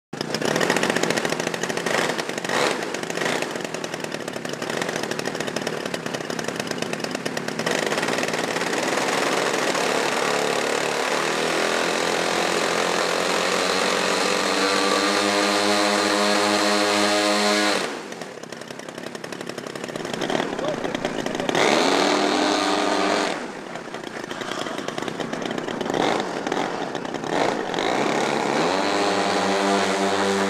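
The small piston engines of a twin-engined radio-controlled model airplane running on the ground, with a rough, uneven note at first. About ten seconds in, the note settles into a steady pitched drone that climbs as the throttle is opened. The sound breaks off abruptly twice and comes back with the same rising drone.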